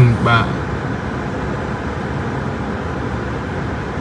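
Steady, even noise inside a car cabin, with a man's voice briefly at the very start.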